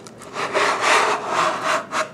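Cardboard lid of a snug gift box rubbing and scraping as it is worked open, in a run of about five short scrapes.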